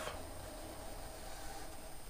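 Faint felt-tip marker drawing lines on paper against quiet room tone.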